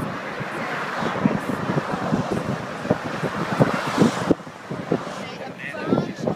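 Wind buffeting the microphone on the open upper deck of a moving bus, with road and traffic noise underneath. The rush of wind cuts off suddenly a little after four seconds in.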